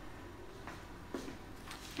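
Faint scraping and squelching of a silicone spatula pushing thick biscuit batter into a plastic zip-lock bag, with two soft knocks about a second in.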